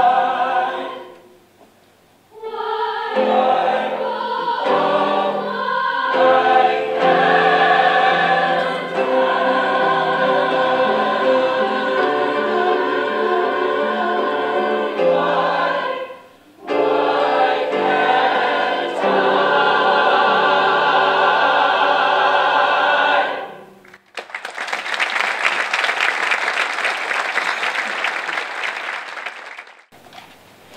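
Mixed choir singing in chords, with two short pauses, the song ending about three quarters of the way through. Audience applause follows until near the end.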